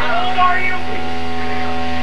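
Steady electrical hum from live-band guitar amplifiers idling between songs, with a held low tone ringing under it.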